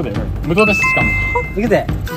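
A two-note electronic chime: two steady high tones that start about half a second in, the second just after the first, and hold for about a second, over people's voices.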